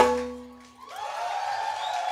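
The last struck note of a live percussion piece rings out and dies away, then after a short gap the audience starts applauding and cheering about a second in.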